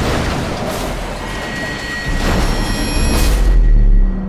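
Action-trailer sound mix: loud booms and blasts over dramatic music, with a deep rumble swelling near the end.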